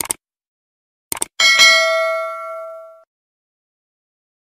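Subscribe-button sound effects: a short mouse click, then a quick double click about a second in, followed by a notification bell ding that rings and fades away over about a second and a half.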